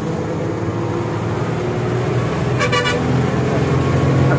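A lorry's diesel engine running steadily, heard from inside the cab and growing slightly louder. A short vehicle-horn toot sounds about two and a half seconds in.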